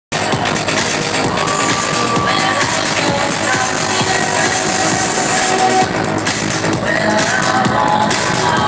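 Loud electronic dance music from a DJ set played over a club sound system, with held synth lines over a dense, continuous mix.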